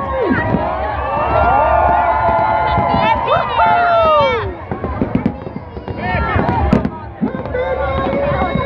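A crowd cheering and shouting, many voices at once, loudest in the first half and thinning out about halfway, over the rumble and crackle of fireworks. One sharp firework bang comes near the end.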